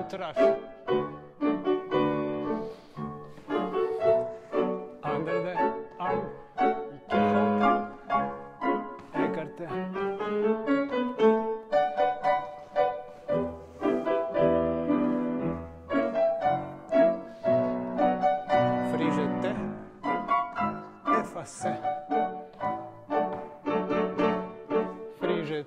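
Classical piano music played at a steady beat, with quick successive notes and chords: accompaniment for a ballet barre exercise.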